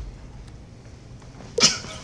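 A short, breathy human vocal sound, one quick exhale with a brief voiced edge, about one and a half seconds in, over quiet room tone.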